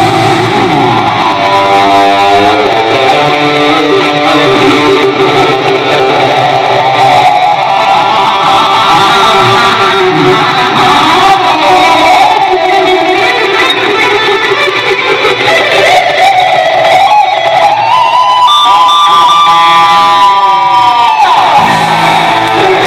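Electric guitar played live, a lead line of sustained notes, with one long held high note near the end that bends down in pitch.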